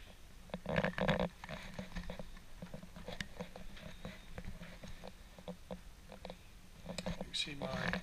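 Hands handling an iPad in a folio case and a charging cable on a desk: scattered light knocks, rustles and clicks, with a louder patch about a second in.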